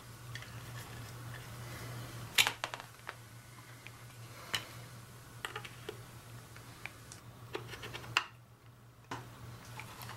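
Scattered clicks and taps of a hand pop rivet tool being handled and set onto a rivet in a small plastic project case, the strongest click about two and a half seconds in, over a steady low hum.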